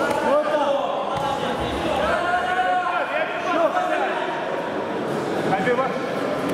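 Several people shouting short calls that rise and fall in pitch, echoing around a large sports hall.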